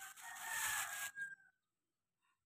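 A rooster crowing once: a single drawn-out call lasting a little over a second that ends about a second and a half in.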